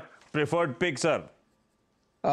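A man speaking briefly in Hindi, then about a second of near silence.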